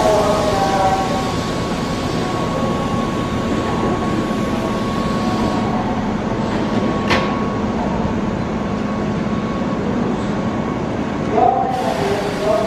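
Keihan 8000-series electric train standing at a station platform, its onboard equipment humming steadily. A steady high single tone sounds over the hum and stops with a sharp click about seven seconds in; a platform voice is heard near the end.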